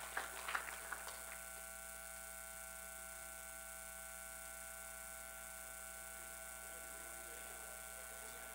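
Steady low electrical hum with a few faint steady tones over it. A few faint short sounds die away in the first second.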